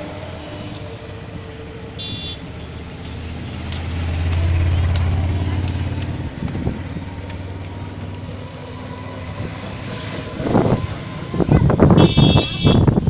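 A low engine rumble swells about four seconds in and fades again by six. A short high beep sounds about two seconds in, and voices come in near the end.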